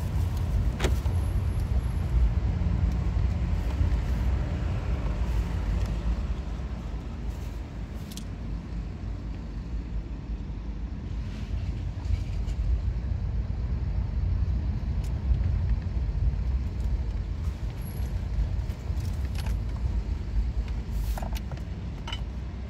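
Car driving slowly: a steady low rumble of engine and tyres, with a sharp click about a second in and a few fainter clicks later.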